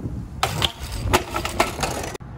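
A BMX bike crashing onto concrete after the rider bails off it, clattering with about four hard metallic impacts as it hits and bounces.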